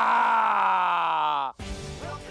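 A single drawn-out groan-like voice, falling steadily in pitch for about a second and a half before cutting off abruptly; background music with a beat then starts.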